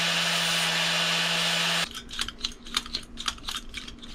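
Handheld angle grinder with an abrasive disc grinding steel, rounding over the sharp point of a Kafer bar bracket; it runs steadily and stops just before two seconds in. A series of light clicks and taps follows as the parts are handled.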